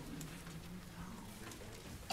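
Faint rustling and light clicks of a congregation turning hymnal pages and settling, with a faint low steady hum.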